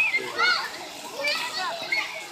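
Children's high-pitched voices calling and squealing as they play, several at once.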